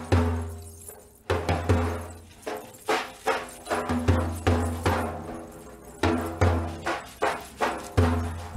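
Large frame drum (daf) played by hand in a driving, uneven Zar dance rhythm of roughly two to three strokes a second. Deep bass strokes that ring on are mixed with sharper, drier strokes.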